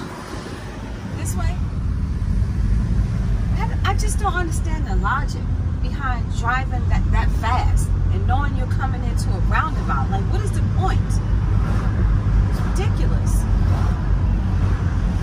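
Steady engine and road drone inside the cabin of a moving Hyundai, with a voice talking indistinctly over it through the middle stretch.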